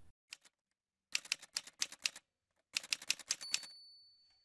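Typewriter-style typing sound effect: two quick runs of key clacks, about seven each, the second ending in a short ringing ding that fades out.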